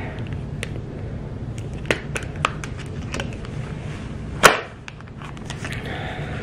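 Small plastic clicks and taps from a phone and a broken plastic phone case being handled and fitted together, with one louder click about four and a half seconds in.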